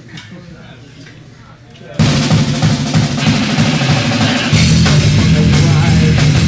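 A live punk rock band starting a song: a couple of seconds of low room noise, then electric guitars, bass and drum kit come in loud all at once, growing fuller a couple of seconds later.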